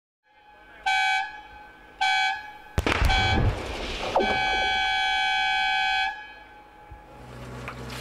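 Blasting warning horn sounding three short toots and then one long toot of about two and a half seconds. A sharp crack with a low rumble comes about three seconds in, from the rock blast.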